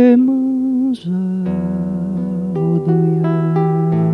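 A man sings a long held note with vibrato over classical guitar, the voice stopping about a second in. The guitar then plays on alone, plucked notes over a sustained bass.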